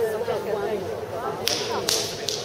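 Murmur of voices in a large hall, then two sharp slaps about half a second apart near the end.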